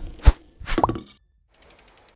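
Animated logo sting sound effects: a sharp thump about a quarter second in, then a short swish with a tone sliding upward just before the one-second mark, and a brief run of faint, rapid ticks near the end.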